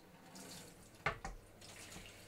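Kitchen tap running faintly into a stainless-steel sink during dishwashing, with two light clinks of crockery about a second in.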